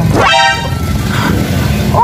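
A quick upward swoop followed by a short, bright horn toot lasting about half a second, over background music with a steady low note.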